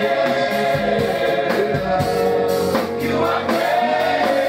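Congregation singing a gospel worship song together, many voices holding sustained notes.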